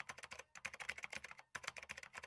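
Faint keyboard-typing sound effect: three quick runs of clicking keystrokes with short pauses between, as on-screen text is typed out.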